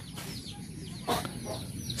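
Birds chirping in the background: a run of short, high chirps, each falling in pitch, with a brief knock about a second in.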